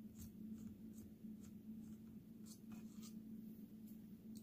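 Faint scratching with light scattered ticks from a precision screwdriver turning a tiny Torx screw out of a drone's plastic body, over a low steady hum.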